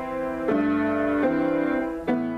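Solo piano playing slow, sustained chords, with a new chord struck twice, about half a second and about a second and a quarter in.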